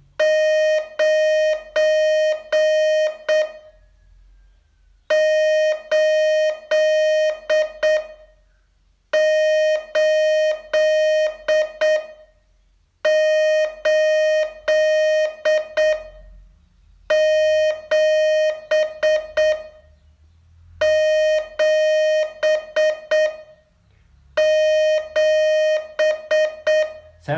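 Morse code sent as a steady pitched tone of dots and dashes: seven characters, each of about five strokes, with a pause of about a second and a half between characters.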